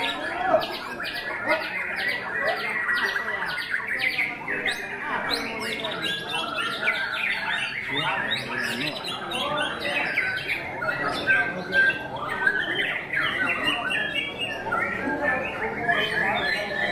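White-rumped shama (murai batu) singing among a dense chorus of other caged songbirds, with a fast run of repeated sharp notes, about four a second, in the first few seconds.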